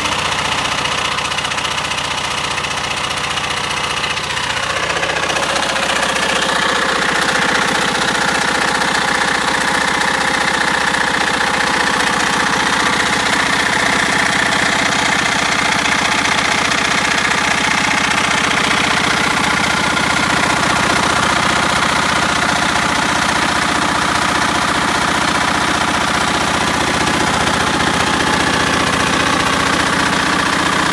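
Lister ST-1 single-cylinder diesel engine running steadily with a knocking beat, driving a 4 kW Brush generator. It grows louder about five seconds in, then holds an even note.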